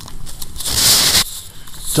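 Handling noise on a handheld camera: a short rush of rustling, under a second long, as the camera is turned around against a jacket, with a fainter rustle near the end.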